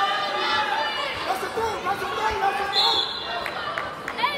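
Spectators' voices talking and calling out, overlapping and echoing in a large gymnasium, with a few short knocks.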